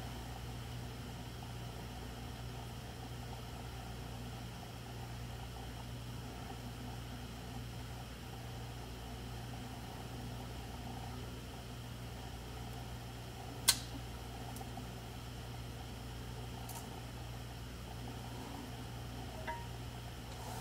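Steady low hum of room noise, with one sharp metallic click from a custom flipper folding knife being handled about two-thirds of the way through, and a few faint ticks near the end.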